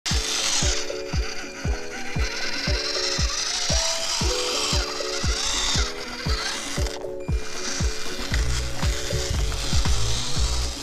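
Background music with a steady kick-drum beat of about two beats a second under sustained chords; a deeper bass line comes in near the end.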